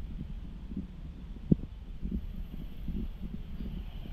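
A motorcycle running along a road: a low, steady rumble with scattered soft thumps. A single sharp knock comes about one and a half seconds in.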